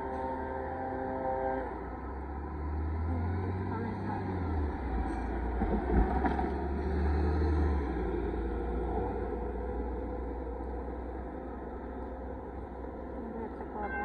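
Road traffic driving over a railroad crossing: a steady low rumble of vehicles going by, swelling twice, about three and seven seconds in. A steady pitched hum stops less than two seconds in.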